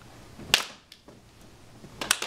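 A group of people clapping once together, a single sharp clap about half a second in.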